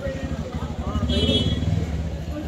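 A motor vehicle engine running close by with a pulsing low rumble that gets louder about a second in, over background voices.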